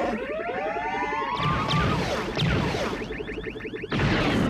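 Chewbacca's Wookiee yell, a film sound effect whose pitch glides upward, followed by the Imperial probe droid's warbling electronic chirps and sweeps, with orchestral film score underneath.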